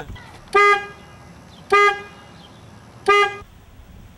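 Car horn honked three times in short blasts, each about a third of a second long and a little over a second apart.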